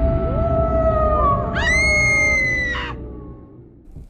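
Eerie horror-style sound effect: a low rumble under a held tone that slowly sinks. About a second and a half in, a scream-like wail rises sharply, holds, and cuts off near three seconds, and the whole sound then fades out.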